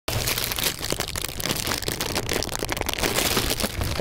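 A thin plastic food wrapper being handled and crumpled by hand: a continuous rustle of crinkling plastic packed with small crackles.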